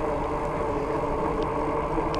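Steady running hum of a 26x4 fat-tire e-bike cruising at about 17 mph on pavement, with wind buffeting the microphone.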